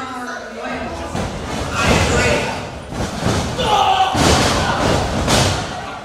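Wrestlers' bodies hitting the mat of a wrestling ring: several heavy thuds, about two seconds in and again through the second half, with voices calling out over them.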